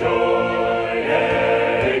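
Unaccompanied choir singing in parts, holding one chord and then moving to another about halfway through.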